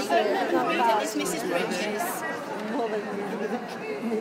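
Indistinct chatter of many people talking at once in a large hall.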